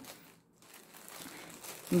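Plastic packaging of yarn packs crinkling faintly as it is handled, starting about half a second in.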